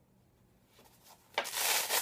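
A fabric camera pouch being handled. It is near quiet at first, then about one and a half seconds in comes a loud half-second rub of fabric.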